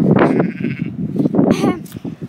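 A farm animal calling, two pitched cries about a second apart, with people's voices mixed in.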